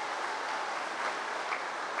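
Audience applauding, a steady spread of clapping.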